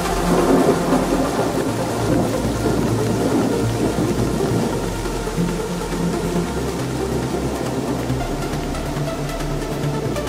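Thunder-and-rain sound effect in a trance track's breakdown, over sustained low synth tones. A rumble swells right at the start and fades over the next few seconds.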